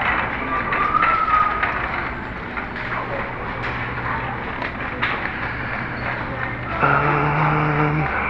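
Supermarket ambience: a shopping cart rolling and rattling lightly over a tiled store floor, over a steady low hum. A short held tone sounds about a second in, and a held, humming pitched sound comes in near the end.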